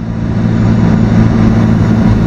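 Alfa Romeo 4C's mid-mounted 1.75-litre turbocharged four-cylinder running at steady revs on track, heard from inside the cabin with road and wind noise behind it.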